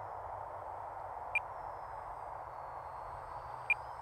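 Faint high whine of the E-flite Micro Draco's electric motor and propeller in flight, drifting slightly in pitch, over a steady hiss. Two short high tones sound about a second and a half in and again near the end.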